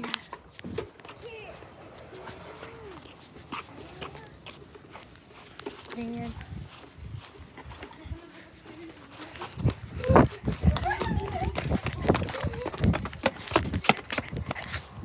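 Blanket fabric rustling and rubbing against a phone's microphone. It grows louder and busier about nine or ten seconds in, and faint voices come and go.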